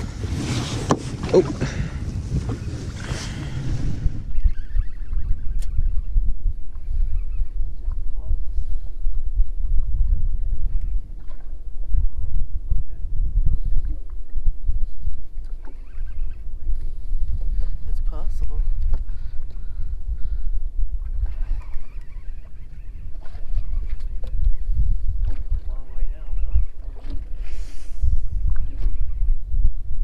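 Low, uneven rumble of wind and water around a small fishing boat, with faint voices now and then. For about the first four seconds a brighter hiss lies over it, then cuts off suddenly.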